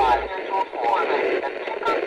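A person's voice, sounding thin, with a low hum that stops just after the start.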